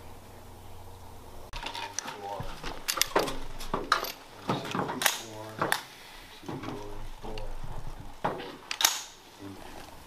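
Indistinct voice without clear words, broken by several sharp clicks and knocks, the loudest about nine seconds in.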